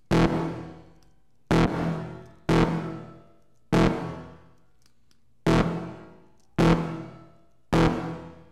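The same single synthesizer note played seven times, about a second or so apart, through a reverb with pre-delay. Each hit starts sharply and fades into a reverb tail over about a second.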